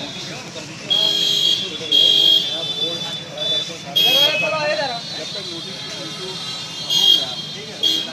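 Vehicle horns honking in about six short blasts, each starting and stopping abruptly, over street traffic noise and voices in a crowd.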